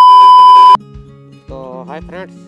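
A loud, steady 1 kHz test-tone beep over hiss, the sound of a TV colour-bar test signal, cutting off suddenly under a second in. Background music follows, with a voice singing from about halfway through.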